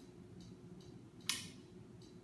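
Quiet room tone with one short, sharp crisp sound a little over a second in, and a fainter tick before it.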